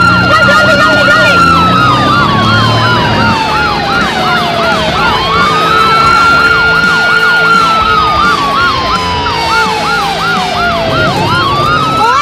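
Ambulance siren sounding continuously: a slow wail that rises quickly, holds, then sinks over a few seconds, cycling about twice, with a fast warbling yelp layered over it.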